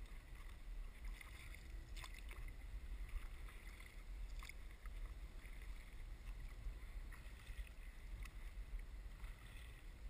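Kayak paddling: the paddle blades dipping and splashing in the water with a few sharper splashes or clicks, over a steady low rumble.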